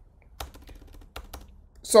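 Computer keyboard being typed on: irregular key clicks, several in a couple of seconds.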